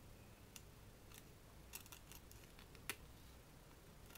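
Faint, scattered clicks of steel needle-nose pliers gripping and twisting copper wire against a plastic frame, about five in all, the sharpest about three seconds in; otherwise near silence.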